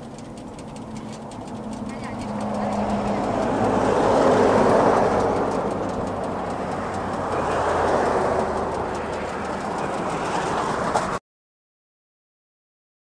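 Road traffic passing: tyre and engine noise swells and fades, loudest about four seconds in and again near eight seconds, over a steady low hum. The sound cuts off abruptly shortly before the end.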